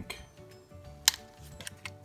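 A knife tip clicking against the small metal tabs of a Speidel expansion watchband's links: one sharp click about a second in and a couple of small ticks near the end, over faint background music.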